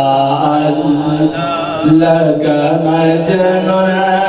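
A man's voice chanting in long, held melodic notes that step up and down in pitch, sung into a microphone, with a brief pause for breath about a second and a half in.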